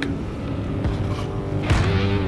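Low, steady road rumble inside a moving vehicle's cabin, then background music with guitar that starts loud near the end.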